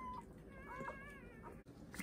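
Newborn golden doodle puppy crying in thin, high-pitched squeals: a short cry at the start, then a few more rising and falling cries about half a second to a second in.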